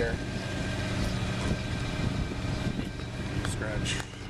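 A motor running steadily with a low hum, with a few faint clicks over it.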